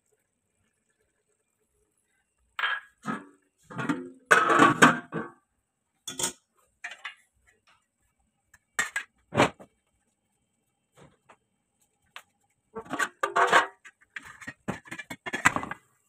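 Steel cookware clattering: a metal lid or plate is handled and set onto a pot in a series of clanks and knocks with pauses between, starting a couple of seconds in. This is the pot being covered to seal it for dum cooking.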